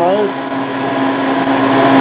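Ice cream machine running, its vertical shaft and spiral blade churning ice cream mix in a stainless steel bowl: a steady mechanical hum with a constant tone.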